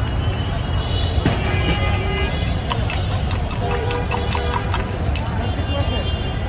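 A metal spoon clinking against a drinking glass as raw egg is beaten in it, a quick run of light clicks, about five a second, from about two and a half seconds in to about five seconds in. Underneath is a steady low rumble of street traffic.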